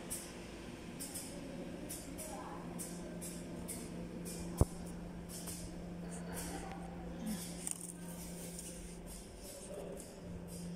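A PP hollow sheet printing and box-cutting machine running with a steady hum, with irregular light high clicks and one sharp knock about halfway through.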